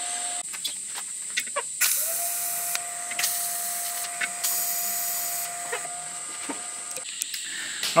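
TIG welder arc tacking a steel mounting plate, a steady hiss with a held tone that starts about two seconds in and stops about six seconds in.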